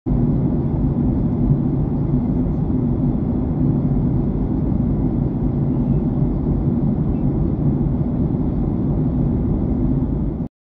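Jet airliner cabin noise in flight: a steady low rumble with a faint hum, heard from inside the cabin.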